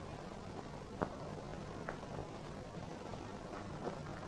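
Steady faint hiss of an old film soundtrack, with two faint clicks about one and two seconds in.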